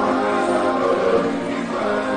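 A group of voices singing together like a choir, steady and full.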